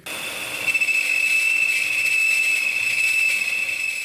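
Small benchtop metal lathe cutting a thick 6061 aluminium tube, giving off a steady high-pitched scream that gets louder about a second in. The sound is typical of a cheap lathe that, in the owner's words, is 'screaming and falling apart'.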